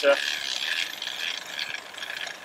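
A road bike's drivetrain spun backwards by hand: the rear hub's freewheel ratchet ticking rapidly and steadily as the chain runs through a clip-on chain cleaner bath of degreaser.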